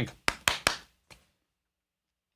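Three sharp hand claps about a fifth of a second apart, then a fainter fourth about a second in. They are a sync test, clapped on camera to check that the stream's sound lines up with the picture.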